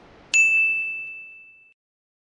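A single bright ding about a third of a second in: one high bell-like tone that rings on and fades away over about a second and a half. It is the sound effect of a channel logo sting.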